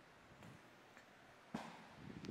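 Near silence with a couple of faint ticks, then a single soft knock about one and a half seconds in as a man sits back onto an adjustable incline weight bench holding a pair of dumbbells.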